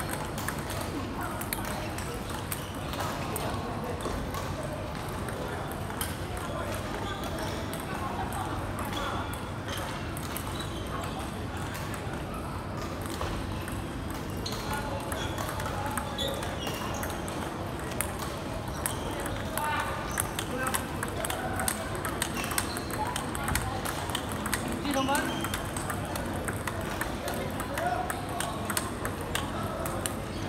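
Table tennis rally: the ball clicking off the rackets and bouncing on the table in quick, repeated strokes, with voices murmuring in the background.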